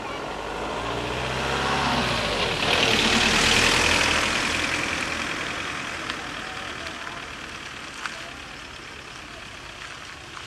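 A Volkswagen Golf hatchback drives past close by and away, its engine note falling as it passes and its tyres hissing on the wet road. The sound builds to its loudest about three to four seconds in, then fades slowly.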